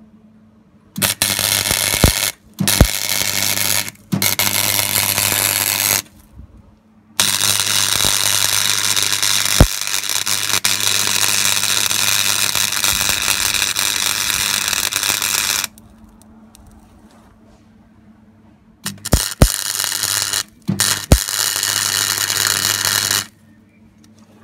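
MIG (wire-feed) welder arc crackling as steel tractor gears are welded together, with a steady hum beneath. Several short welds of one to two seconds come in the first six seconds, then one long run of about eight seconds, then more short welds near the end, each starting with a sharp crack.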